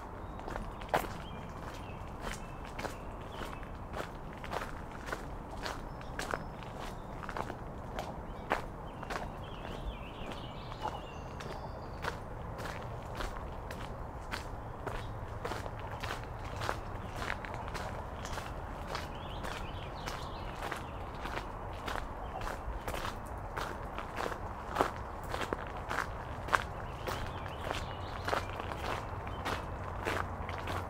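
Footsteps on a wet gravel path, an even walking pace of about two crunching steps a second.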